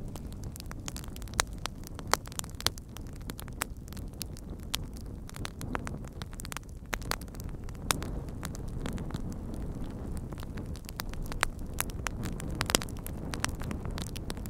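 A fire crackling: a steady low rumble with irregular sharp pops and snaps scattered through it, a few louder ones about two seconds in and near the end.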